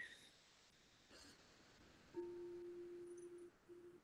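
A singing bowl sounding faintly: one steady, pure tone starting about two seconds in, breaking off for a moment and coming back briefly near the end. It is a false start, which the player puts down to the bowl not sitting on its base.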